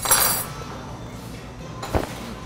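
Tableware clinking on a bar counter: a bright ringing clink at the start, then a single knock near the end as something is set down.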